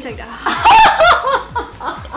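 Two people laughing together: a loud, high-pitched burst of laughter about half a second in, trailing off into softer chuckles.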